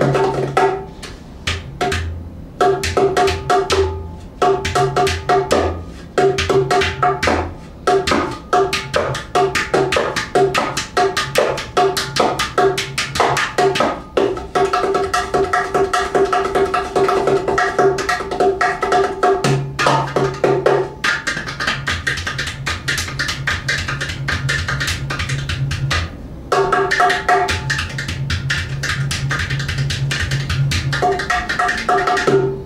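A 10-inch Cajudoo, a hand drum that joins a ceramic udu-style pot body to a cajón-style wooden playing surface, played rapidly with the hands and fingers. Dense fast strokes sound over ringing pitched tones and a deep bass note from the body. About two-thirds through, the playing turns to mostly deep bass strokes, and the higher ringing tone comes back near the end.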